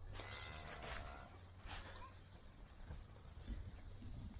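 Faint outdoor ambience in a cattle pen: a low steady rumble with a few soft rustles and faint clicks.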